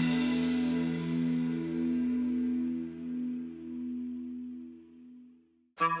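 The final chord of a post-punk song ringing out, swelling and pulsing as it slowly fades to silence over about five seconds. Near the end the next song starts with quickly picked guitar notes.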